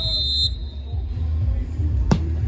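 Referee's whistle: one short, high, steady blast of about half a second at the start, the signal for the free kick to be taken. A steady low rumble runs underneath.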